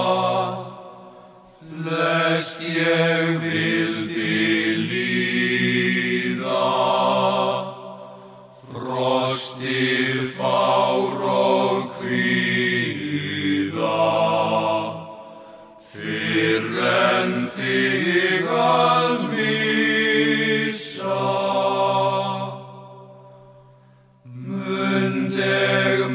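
Icelandic tvísöngur: voices singing a folk song in two parts in parallel fifths, in four long held phrases with short breaks between them.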